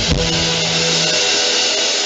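Live church band music: a ringing cymbal wash over a held keyboard chord, whose low note stops about halfway through.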